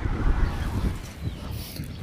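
Wind rumbling on the microphone outdoors, an uneven low buffeting that is strongest at the start and eases off.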